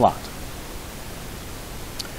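The last word of a man's speech, then a steady hiss of microphone background noise with nothing else clearly heard.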